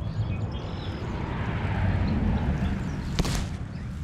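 Grass rustling and handling noise close to a small action camera's microphone, over a low rumble, with one sharp knock a little after three seconds in and faint bird chirps.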